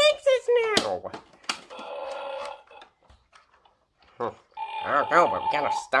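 A child's voice making wordless play noises and held sound effects, with a pause of about a second and a half in the middle.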